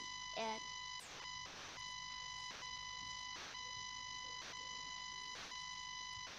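A steady high-pitched electronic tone with a ladder of overtones, a weird noise from a faulty microphone on a video call, broken by soft crackles about once a second.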